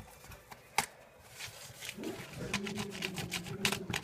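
Paper crinkling and cardboard tube being handled as decorative paper is pressed and rolled around it: a sharp tap about a second in, then a quick run of clicks and crackles in the second half over a steady low hum.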